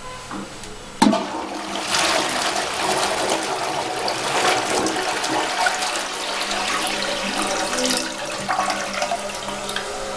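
CEC Montrouge close-coupled toilet flushing: a sharp clunk as the flush is triggered about a second in, then water rushing loudly through the bowl for several seconds, easing off near the end.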